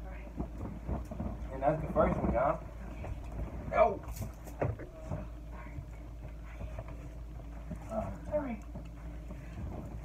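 Short bursts of low, unclear voices amid rustling and knocking handling noise close to the microphone as the filming phone is picked up and moved, over a steady low hum.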